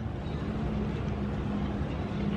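A steady, low mechanical drone holding one constant pitch over a low rumble, like an engine or machine running at idle.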